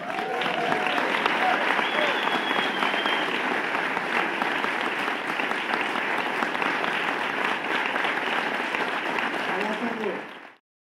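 Audience applauding loudly and steadily at the end of a performance, with a few voices calling out near the start.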